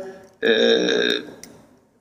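A man's drawn-out hesitation sound, a held 'eee', starting about half a second in and lasting under a second before fading. It comes over a thin remote video-call line.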